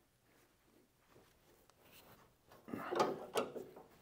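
Wrench working the nut on a front strut rod under the car: a short run of metallic clicks and scrapes starting about two and a half seconds in, after a quiet stretch.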